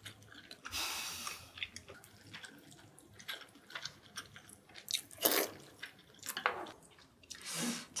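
Close-miked wet chewing and mouth smacks of someone eating braised beef short ribs, many small clicks, with three louder hissing rushes: about a second in, past the middle, and near the end.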